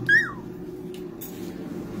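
A brief high-pitched squeal from a man's voice, falling in pitch, just after the start, over a steady low hum.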